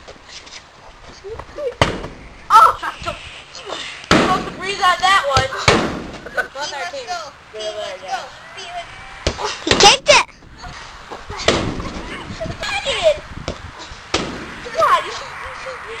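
Boys' voices shouting and talking, broken by several sharp thumps, the loudest about ten seconds in.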